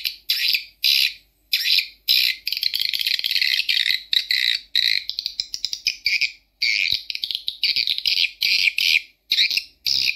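A recording of swiftlet calls played through an Audax horn tweeter: rapid, high chirping trills in bursts of about half a second to a second, with short gaps between them.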